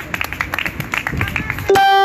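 Outdoor crowd noise, then, near the end, a loud horn blast cuts in suddenly: one steady held note.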